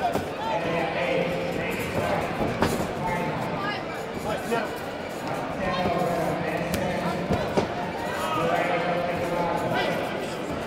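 People calling and shouting around a kickboxing ring, with a few sharp thuds of gloved punches and kicks landing, clearest about two and a half seconds in and again near eight seconds.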